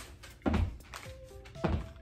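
Sneakered feet landing on a wooden floor during star jumps: two heavy thuds about a second apart, over background music.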